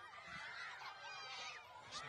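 A crowd of young schoolchildren shouting and squealing together, many high overlapping voices, heard faintly.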